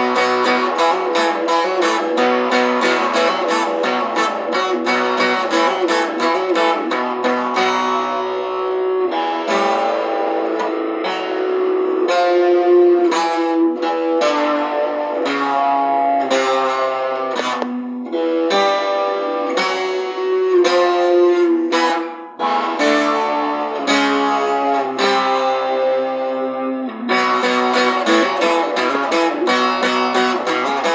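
Steel-string acoustic guitar played solo, a run of picked notes and strummed chords with no voice, briefly pausing about two-thirds of the way through.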